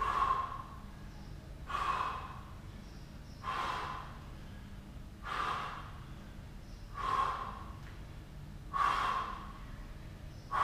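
A man's heavy, forceful breaths out during a plank/push-up exercise, one about every second and three quarters, six in all, each a short rushing puff.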